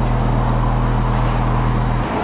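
Honda Fit Hybrid's stock exhaust at idle, heard up close at the factory tailpipe: a steady low hum.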